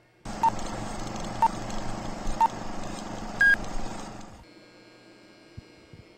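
Three short electronic beeps one second apart, then a single higher beep, like a countdown, over a steady hiss and hum that fades out about four and a half seconds in.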